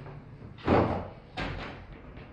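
Wooden door shutting with a loud thud, then a second, quieter knock about half a second later.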